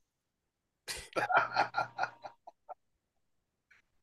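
A man laughing in a quick run of short bursts that trails off, starting about a second in.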